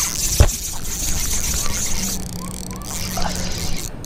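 Fishing reel's drag buzzing as a big bass strips line, fading after about two seconds, with a sharp click about half a second in. A steady low hum follows in the second half.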